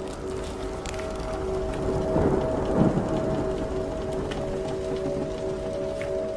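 Layered ocean-and-ship sleep ambience: a steady wash of sea noise that swells into a louder rumbling surge about two to three seconds in, with scattered small clicks and knocks over it. A low held drone of two steady tones sounds underneath throughout.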